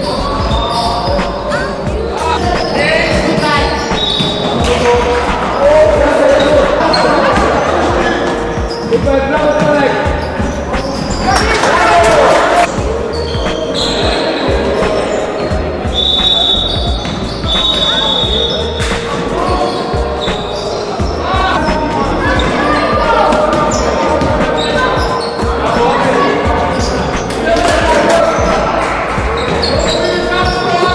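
Basketball game on a hardwood gym floor: the ball bounces repeatedly, players shout, and there are short high squeaks. Everything echoes around the large hall.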